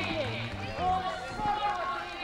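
Many voices at once: a stadium crowd and marching athletes chattering and calling out, with no single voice standing out.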